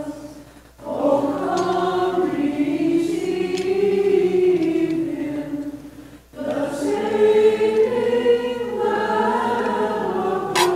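A choir singing a slow hymn in long held phrases that rise and fall, with brief breaks about a second in and just past six seconds in.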